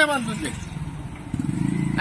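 Motor scooter and motorcycle engines running in passing street traffic, growing louder near the end as one comes close.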